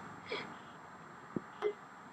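Quiet background with two faint small clicks in quick succession a little past halfway.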